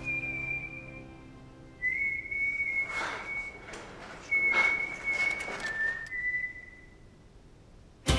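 High, steady whistling: four or five long held notes, each slightly lower or higher than the last, with short gaps between. Two soft whooshes come about three and four and a half seconds in, and a faint low drone sits under the first notes.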